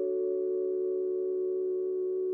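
News intro jingle: the held final chord of several steady tones, sustained without change.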